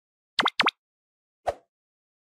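Subscribe-button animation sound effects: two quick pops close together, each dipping and then rising in pitch, then a single short click about a second later.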